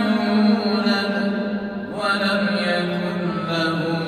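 A man's voice chanting a Quran recitation in Arabic: a melodic line of long held notes, with a new phrase rising in pitch about two seconds in.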